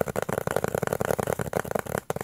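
Fingernails tapping fast on a round cardboard disc, about a dozen even taps a second.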